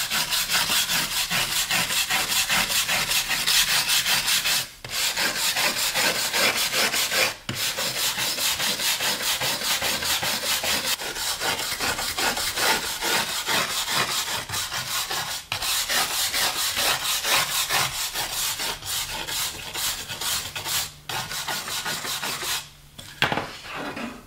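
Hand-held steel wire brush scrubbing hard along the grain of an oak cabinet door, in rapid back-and-forth strokes that cut through the old finish. A few short pauses break the scrubbing, and it stops about a second before the end.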